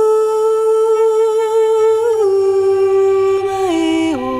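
Slow folk music: a wordless, humming voice holds a long note, then steps down in pitch about halfway through and again near the end.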